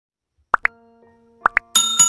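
Sound effects of a YouTube subscribe-button animation: two quick pairs of short pops, about a second apart, as the like and subscribe buttons are clicked, then a bright bell ding near the end that rings on.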